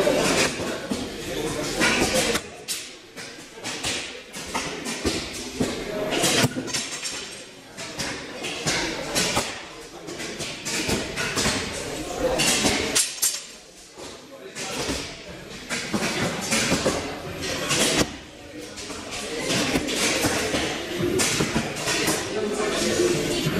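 Indistinct voices in a large echoing hall, with a few sharp thuds of arrows striking a foam target boss.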